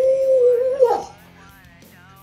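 A man's drawn-out, Bruce Lee-style martial-arts cry, rising in pitch, held for about a second, then breaking off.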